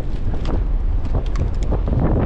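Strong wind buffeting the microphone as a steady low rumble. Through it come a few short scrapes and rattles of wet sand in a perforated metal sand scoop as it is dug and lifted.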